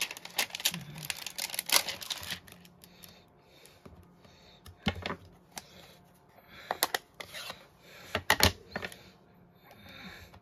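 Clear plastic stamp case and stamping pieces being handled on a desk: scattered sharp clicks and taps of hard plastic, a flurry in the first two seconds, then single loud clicks about five, seven and eight and a half seconds in.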